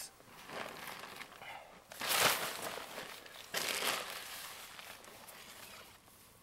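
Tent fabric rustling and crinkling in three bursts as the tent flap is handled, the loudest about two seconds in, fading toward the end.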